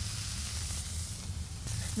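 Raw 80/20 ground-beef burger patty sizzling steadily on a hot steel flat-top griddle, freshly laid down and salted, with a steady low hum underneath.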